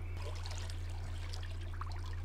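Water trickling in a steady faint stream, from the episode's soundtrack, over a steady low hum.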